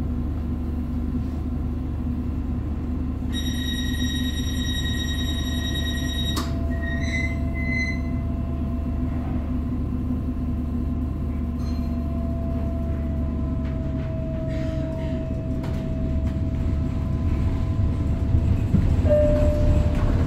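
Tyne and Wear Metro Class 994 Metrocar: a steady high-pitched electronic tone sounds for about three seconds and cuts off sharply, with a few short chirps after it. Then a thin steady whine rides over the low rumble of the car as it moves off, the rumble growing louder near the end.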